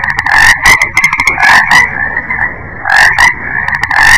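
Frogs croaking in a continuous chorus, with louder runs of rapid croaks about every second and a half.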